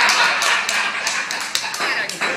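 Small audience reacting to a joke: voices and laughter mixed with scattered claps and sharp taps.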